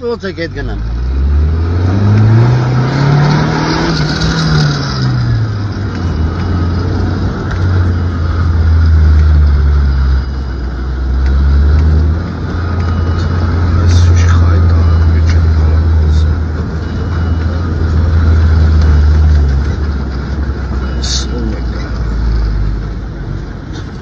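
Vehicle engine driving along a dirt track: its note rises and falls over the first few seconds, then settles into a steady low drone that fades near the end, with a few short knocks along the way.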